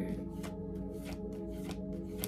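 A tarot deck shuffled overhand by hand: a quick run of soft card slaps, about four or five a second, over steady background music.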